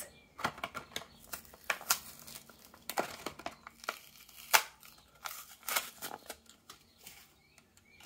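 Clear plastic blister of a Hot Wheels toy-car blister card being peeled and torn off its cardboard backing by hand: irregular crinkling and sharp plastic crackles, the loudest snap about four and a half seconds in.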